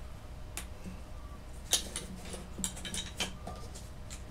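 Small hand sculpting tools clicking and clinking as they are picked up and set down on a desk: a handful of sharp taps, the loudest a little under two seconds in, with more following over the next second and a half. A low steady hum runs underneath.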